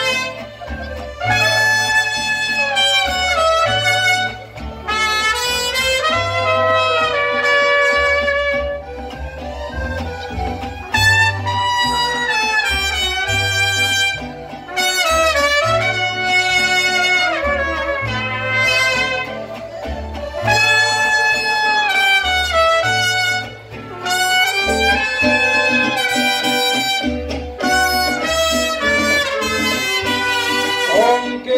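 Mariachi band playing an instrumental introduction, two trumpets carrying the melody in phrases over strummed guitars and a walking bass line.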